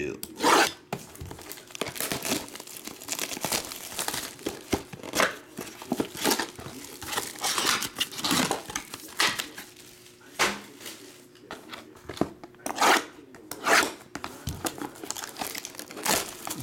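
Plastic shrink wrap being cut and torn off a trading card hobby box and its mini boxes, crinkling in many short, sharp crackles, with cardboard boxes handled and scraped.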